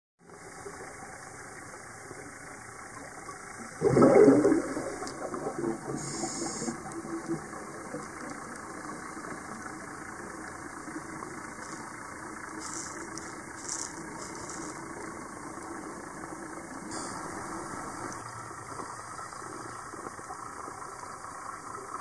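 Underwater ambience on a diver's camera: a steady hiss with a faint hum, broken about four seconds in by one loud gurgling burst of scuba exhaust bubbles that fades over a couple of seconds.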